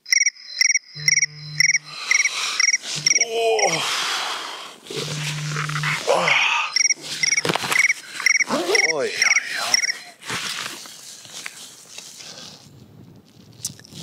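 Trains of rapid, high cricket-like chirps, about three a second, stopping about four seconds in and returning from about seven to ten seconds in. Sliding whistle-like tones and short low hums sound between the chirps, then everything fades toward the end.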